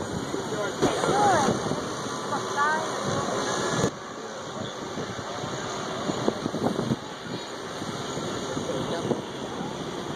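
Indistinct chatter of onlookers over a steady wash of wind and sea noise. The background drops abruptly about four seconds in.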